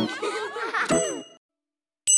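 Cartoon sound effects: high, wavering, playful vocal sounds, then a bright chime struck about a second in that rings briefly. The sound cuts off suddenly.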